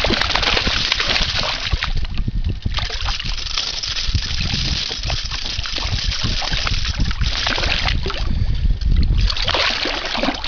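A fish thrashing at the water's surface beside a canoe, splashing in uneven bursts, loudest near the start and again near the end, over a low rumble on the microphone.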